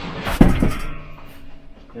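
A folded-down RV dinette tabletop being set into its travel position, knocking once against its base about half a second in, with some handling noise around it.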